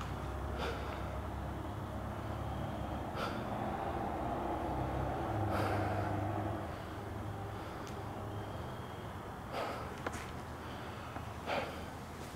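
A man breathing heavily, with a few sharp audible breaths spread through it, over a faint low hum.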